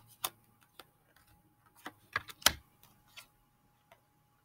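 Tarot cards being handled and shuffled: a scatter of sharp clicks and snaps at uneven intervals, the loudest about two and a half seconds in.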